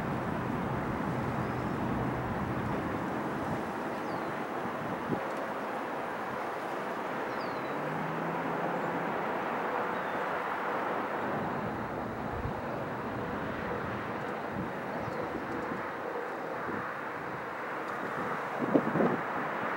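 Steady, even outdoor rushing noise of distant engines and traffic, with a few short, faint bird chirps scattered through it.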